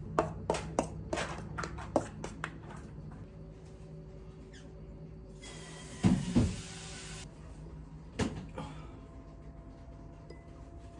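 Light kitchen handling sounds from utensils and a glass dish during tiramisu assembly. A run of sharp clicks and taps comes in the first three seconds, then a couple of louder soft thumps about six seconds in and one more near eight seconds.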